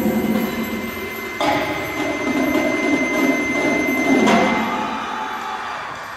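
Indoor percussion front ensemble playing a soft, sustained passage of ringing tones. New entries swell in about a second and a half in and again about four seconds in, then the sound fades toward the end.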